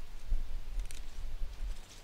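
Wind buffeting the microphone as an uneven low rumble, with one faint snip of hand pruners cutting salvia stems near the middle.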